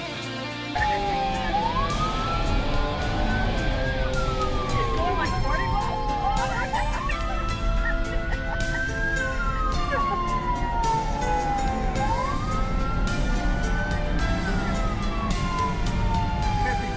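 Police car siren on wail, its pitch rising and then slowly falling in long sweeps about every five seconds, starting about a second in. It is heard from inside the moving patrol car, with a low rumble underneath.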